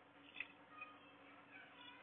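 Near silence: room tone with a faint steady hum and one faint click less than halfway in.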